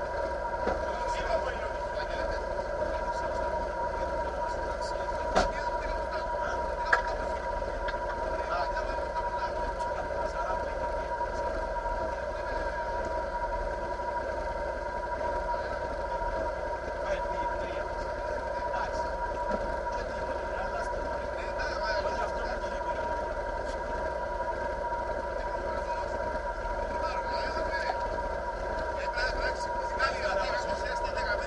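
Mitsubishi Lancer Evolution VII Group A rally car's turbocharged four-cylinder idling steadily at a standstill, heard from inside the cabin, with muffled voices around it and a couple of sharp clicks about five and seven seconds in.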